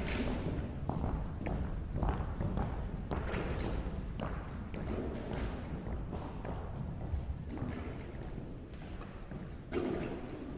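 Footsteps of several people walking across a wooden stage floor: irregular thuds and taps, with a louder knock near the end.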